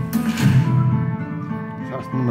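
Music played back through a home-built 60-watt stereo amplifier and loudspeaker: a track with a regular beat about every 0.8 s over a deep bass line and held tones, louder in the first second.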